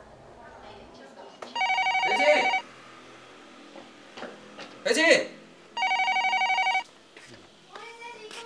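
Telephone ringing twice, each ring a fast trilling burst about a second long, about four seconds apart, with a brief loud sound between the rings.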